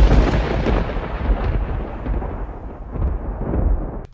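Thunder sound effect: a loud rolling rumble with a second swell about three seconds in, its hiss thinning out before it cuts off suddenly near the end.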